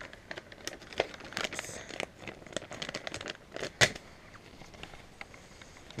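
Plastic packaging crinkling and rustling as it is handled, in irregular crackles with a sharp click about four seconds in, quieter after that.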